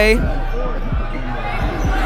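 Basketball dribbled on a hardwood gym floor: a few bounces over steady gym background noise.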